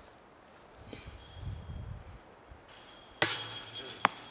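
A disc golf putt strikes the lower metal band of a Discatcher basket with a single sharp clank that rings briefly, about three seconds in. The putt was too short to reach the chains.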